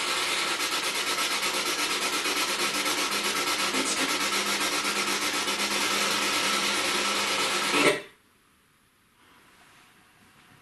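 P-SB7 spirit box sweeping through radio stations, its speaker giving a loud, rasping static chopped many times a second. About eight seconds in, the sound cuts off suddenly as the speaker goes off for no reason while the unit stays switched on.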